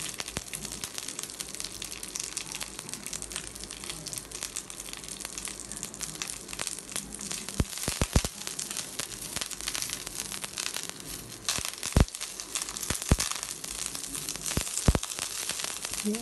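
Fresh curry leaves frying in a little hot oil in a nonstick pan, a steady crackling spatter with a spatula stirring through them. A few louder clicks stand out in the second half.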